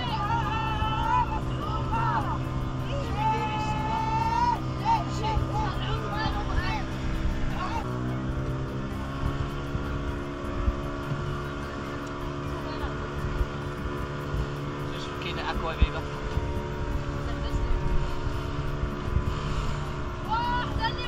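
A nearby motor vehicle's engine running steadily, its pitch shifting about eight seconds in, with voices in the first few seconds and again later.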